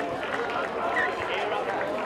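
Several indistinct voices overlapping at once: rugby league players calling to each other and onlookers talking during open play.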